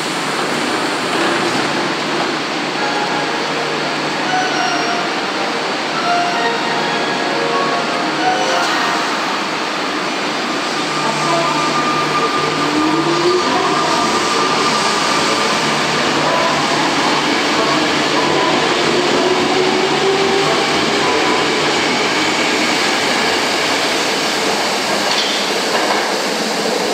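Tokyo Metro Ginza Line 01 series subway train pulling out of the station and accelerating away: steady wheel-on-rail running noise with motor tones that rise in pitch as it gathers speed, echoing in the underground platform.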